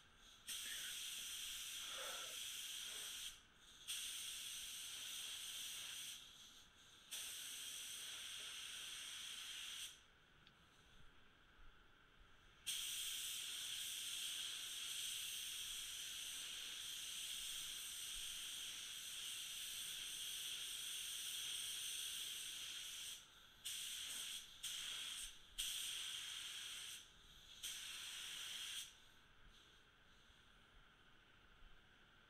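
SATAJET RP spray gun hissing as compressed air atomises base coat, in runs that start and stop as the trigger is pulled and released. There are several passes of a few seconds, one long pass of about ten seconds in the middle, and a quick series of short passes near the end.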